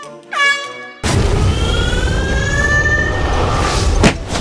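Cartoon sound effects: a brief springy glide in pitch, then about a second in a loud rushing whoosh with a slowly rising horn-like tone that runs for about three seconds, ending on a sharp hit.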